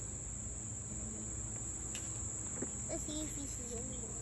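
A steady, unbroken high-pitched chorus of singing insects, with a low steady hum underneath.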